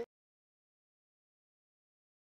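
Silence: the audio cuts out completely at an edit between clips.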